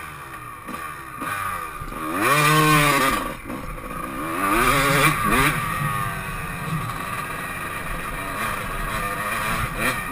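Motocross dirt bike engine heard on board, revving up hard and easing off twice: the loudest pull about two to three seconds in, a second about five seconds in, then running steadier at part throttle.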